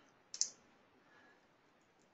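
A single short computer click about half a second in as the presentation advances to the next slide; otherwise near silence.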